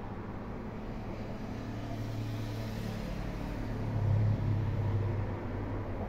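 Road traffic, cars passing on the road: a swell of tyre noise about two to three seconds in, over a steady low hum that grows louder around four seconds in as another car approaches.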